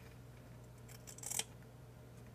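Small scissors snipping through thin striped fabric: one cut a little over a second in.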